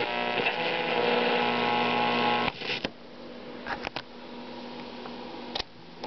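Panasonic FM/AM multiplex stereo receiver putting out a steady mix of tones as it is tuned on the FM band. The sound cuts off with a click about two and a half seconds in. After that come a low hum and several sharp clicks from switches and cassette-deck buttons.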